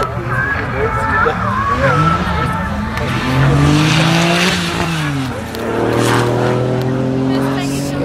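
Porsche 911 Turbo sports car engine revving hard as the car accelerates along the course. Its pitch climbs, drops about five seconds in, then holds steadier.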